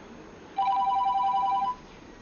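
Mobile phone ringing: a rapid trilling ring on two steady notes, starting about half a second in and lasting just over a second.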